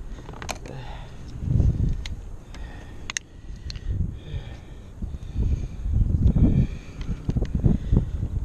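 A bass flopping in a rubber landing net in a plastic kayak, with irregular thumps and a few sharp clicks as the fish struggles and is handled.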